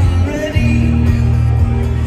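Live rock band playing through a large outdoor PA, heard from far back in the crowd: a singer's voice over guitar with a strong, steady bass line.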